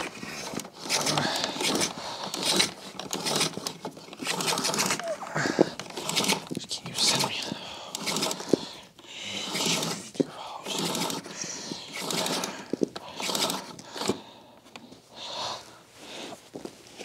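Power cord being drawn out of the cord reel of a Bosch Premium Electric Duo XXL canister vacuum hand over hand: a long series of scraping pulls, about one a second. The pulls stop a little before the end.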